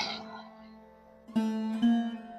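Background music: after a short quiet gap, plucked-string notes come in about halfway through, then a second note.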